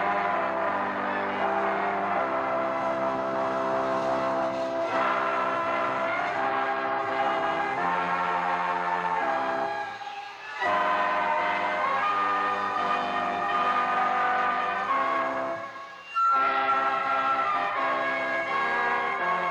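Instrumental music on a keyboard instrument: sustained chords, each held a second or two before moving to the next, with two brief breaks about ten and sixteen seconds in.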